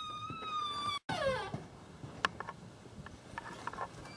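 A door squealing on its hinges as it swings open: a high squeal that falls slightly in pitch for about a second, then after a short break a briefer squeal sliding down in pitch. A few scattered clicks and knocks follow.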